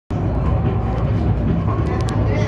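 Resciesa funicular car running along its track, heard from inside the cabin: a steady low rumble.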